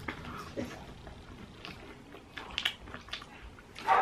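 Soft chewing of takeaway chips, with a few faint crunches. A dog barks once near the end.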